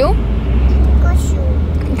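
Steady low rumble of a car's engine and tyres on the road, heard inside the cabin.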